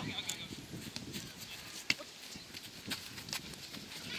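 Futsal ball being kicked and players' shoes on artificial turf: a scatter of sharp knocks and scuffs, the loudest a single crisp kick a little before two seconds in.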